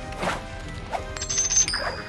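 Cartoon sound effects of a toss ring hitting the ring-toss bottles: a knock, then a second clink and short high ringing dings in the second half, over light background music.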